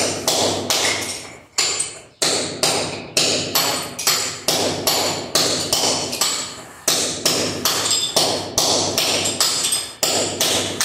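Ceramic floor tiles being struck and chipped off a concrete subfloor: sharp knocks about three a second, some with a brief ringing ping, with a short break about two seconds in.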